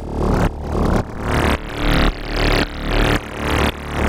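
A soloed wavetable synth bass layer in Ableton's Wavetable playing one repeated D note, pulsing about twice a second in an EBM rhythm at 111 BPM. An auto-pan gives it the bounce, and a macro sweeps the positions of its two wavetables so the tone keeps shifting.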